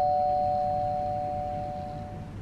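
Two-tone doorbell chime ringing out, its two notes fading away slowly.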